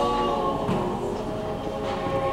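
Choir singing held chords that shift in pitch every second or so.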